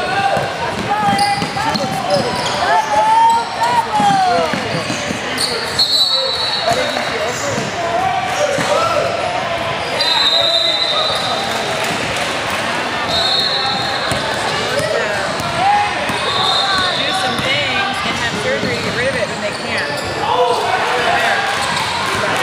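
Basketball game sounds in a gymnasium: a ball being dribbled on the hardwood court under a running mix of players' and onlookers' voices, echoing in the large hall. A few short high-pitched squeaks cut through now and then.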